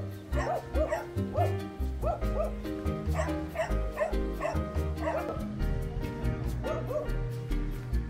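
Jindo dogs barking again and again, about two barks a second, thinning out after about five seconds.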